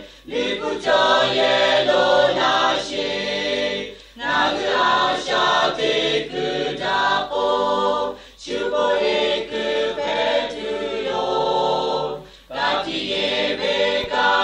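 A choir singing, in phrases of about four seconds with brief breaks between them.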